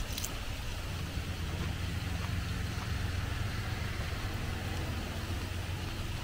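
Steady low hum of an idling engine, even throughout, with a faint hiss above it.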